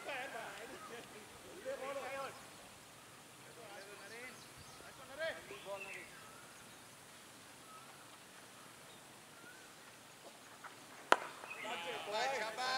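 Distant fielders' voices calling out on a cricket ground, then, near the end, a single sharp crack of a cricket bat hitting the ball, followed by more calling.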